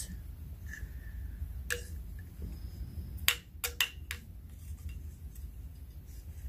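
Handling noise from glassware and a small flashlight: a sharp click about two seconds in, then four quick clicks within about a second, over a steady low hum.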